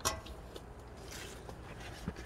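A single sharp knock with a short ring at the very start, then faint rustling and small clicks of movement over a low steady hum.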